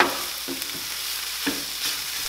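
Crumbled tofu scramble sizzling in a nonstick frying pan on raised heat as it dries out and crisps, stirred with a wooden spatula that scrapes and knocks against the pan a few times.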